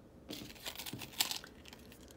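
Faint rustling with a few light clicks, as of objects being handled and moved about.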